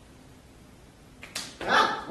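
A performer's short, loud bark-like yelp in imitation of a dog, coming late after a quiet stretch and just after a brief sharp click.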